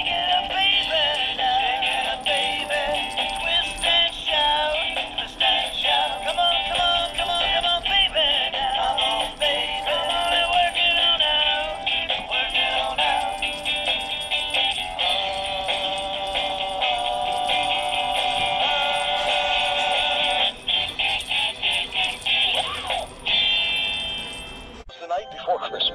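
Animated plush T-rex Christmas toy playing an electronic sung Christmas song through its small built-in speaker, thin and tinny with no bass.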